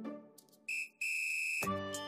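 Background music dies away, then two high-pitched electronic beeps sound, a short one followed by a longer one of just over half a second, before the music starts again.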